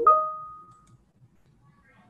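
Electronic notification chime from the computer: a quick rising note that settles into a ringing tone and fades away within about a second.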